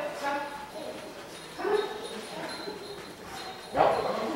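A dog harnessed to a weight-pull cart barking and whining in three short yips, the last near the end the loudest, excited as it waits to pull.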